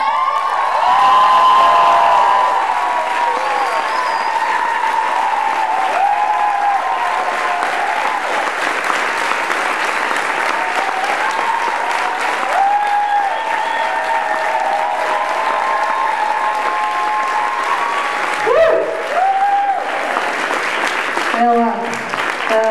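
Audience applauding and cheering: dense, steady clapping with many whoops and shouts over it.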